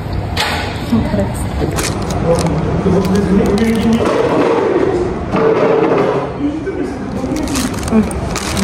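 Indistinct voices talking, with a few short crackles of a paper burger wrapper being handled.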